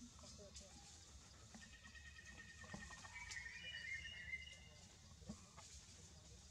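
Newborn macaque crying faintly: thin, high-pitched squealing notes starting about one and a half seconds in and fading out past the four-second mark.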